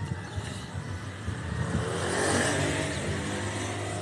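Motorbike engine speeding up, its pitch rising about halfway through and then holding, over steady road and wind noise.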